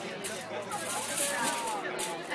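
Aluminium foil crinkling in short irregular bursts as it is folded around a rack of ribs, over indistinct background chatter of voices.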